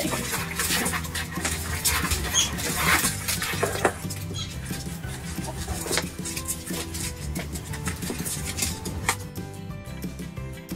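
Background music under irregular clattering and rattling of a plastic puppy pen and the items in it being moved and cleaned, busiest in the first few seconds.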